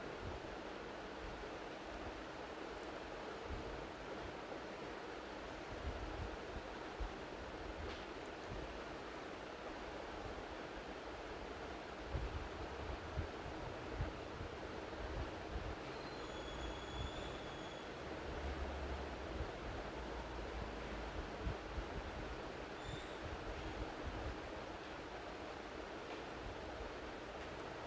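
Steady background hiss and low rumble of an open microphone with no one speaking, with scattered soft low thumps and a couple of faint, brief high chirps about two-thirds of the way through.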